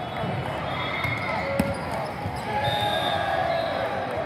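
Echoing hall noise of indoor volleyball: a steady murmur of crowd voices with short sneaker squeaks on the court, and one sharp ball smack about one and a half seconds in.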